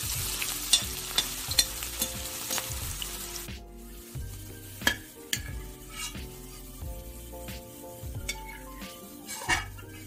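Sliced onions deep-frying in hot oil in a steel kadai, sizzling, while a perforated metal spoon stirs and knocks against the pan. The sizzle drops off about three and a half seconds in, leaving scattered sharp clinks of the spoon on the steel.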